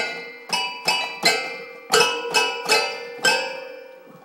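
Toy piano banged by a baby's hands: about eight uneven strikes, often several keys at once, each chord ringing and fading before the next.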